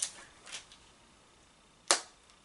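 A faint click about half a second in, then one sharp plastic clack near the end as a compact makeup highlighter is handled.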